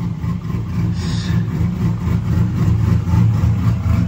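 Pontiac G8's engine idling with a steady low rumble.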